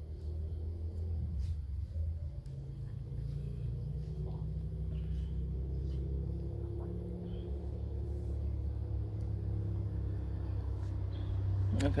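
Steady low rumble of outdoor background noise, with no distinct events standing out.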